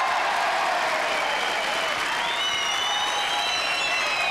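Studio audience applauding, loud and steady, with high-pitched cries rising over the clapping from about halfway through.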